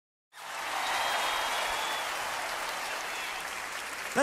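Audience applauding, starting abruptly just after a brief silence and then holding steady, easing off slightly toward the end.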